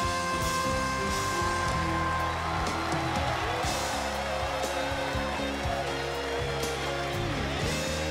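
A pop ballad performed live: a male singer holds a long belted note over the backing band, the note ending about two seconds in, after which the band plays on alone.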